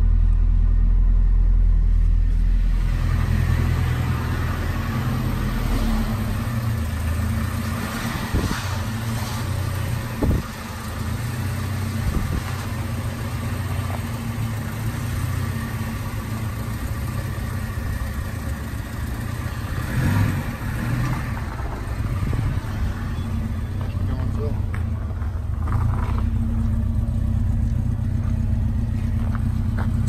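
1983 Alfa Romeo Spider Veloce's fuel-injected 2.0-litre twin-cam four-cylinder idling steadily shortly after a cold start. The low engine note is heavier for the first couple of seconds, heard inside the cabin, then lighter from outside the car.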